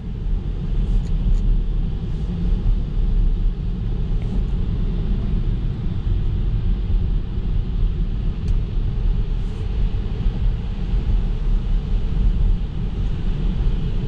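Steady low road rumble inside a Tesla's cabin while driving on an icy, slushy road, with tyre and road noise and no engine sound from the electric car.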